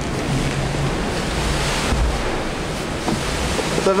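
Steady rush of wind and sea water around a maxi-trimaran under sail, with wind buffeting the microphone.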